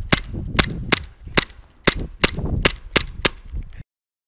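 A Glock 17 gas blowback airsoft pistol fires a string of about nine shots, two to three a second and a little uneven, each a sharp snap. The sound cuts off abruptly near the end.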